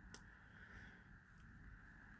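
Near silence: faint room tone, with one very faint click just after the start.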